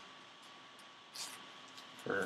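Faint handling of baseball trading cards: one brief soft swish of a card brushing against another a little over a second in, over quiet room hiss.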